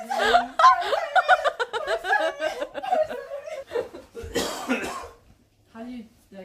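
Several people shouting and laughing excitedly, with no clear words, followed about four seconds in by a short, harsh, noisy burst of voice.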